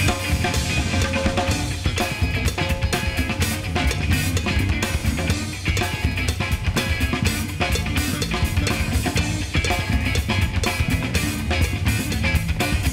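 Live funk-fusion jam with no singing: drum kit and congas playing a busy, steady groove over electric guitars and bass.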